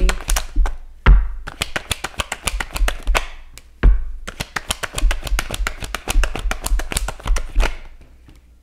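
Tarot cards being shuffled and handled by hand on a table: a rapid run of crisp card clicks, broken by two louder knocks of cards on the table about one second in and just before four seconds.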